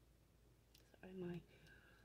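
Near silence with quiet room tone, a couple of faint clicks, then a woman speaking a single soft word.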